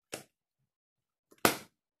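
Two short, sharp cardboard sounds from a small box being opened by hand: a light one at the start, then a much louder snap about a second and a half in.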